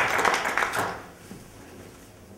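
Audience applauding, dying away about a second in.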